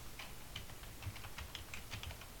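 Computer keyboard typing: about eight quick, light keystrokes as a password is entered.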